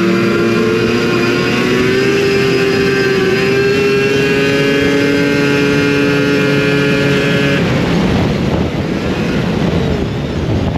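Yamaha SRX 700's three-cylinder two-stroke engine held at wide-open throttle at about 80 mph, its note climbing slightly and then holding steady. About seven and a half seconds in the throttle is released and the engine note drops away suddenly, leaving a rushing noise.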